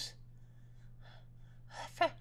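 A quiet pause in speech: a faint low steady hum, with a short intake of breath near the end.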